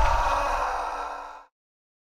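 The fading tail of a loud hit sound effect: a noisy hiss dying away over about a second and a half, then the audio cuts off suddenly.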